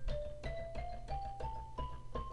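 Virtual Drumline sampled xylophone notes sounding one at a time as they are entered into the score, about three a second, climbing step by step in pitch, with faint typing clicks alongside.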